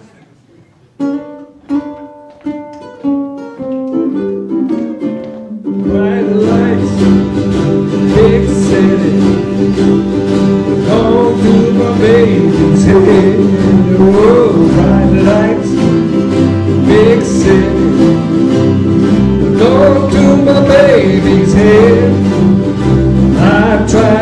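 Ukulele band playing: a few strummed chords ring out one by one and fade, then about six seconds in the whole group comes in, strumming a steady rock song over a low bass part.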